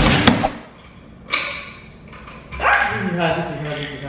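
A woman's drawn-out, wavering whine of frustration, falling in pitch, about three seconds in. It is preceded by a short rustling scrape about a second in, and background music cuts off just after the start.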